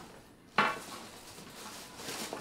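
A sharp clink about half a second in, then a rustle as items are handled in a leather case and its cloth wrapping.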